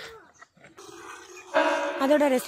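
Cattle mooing: one short, steady call about one and a half seconds in.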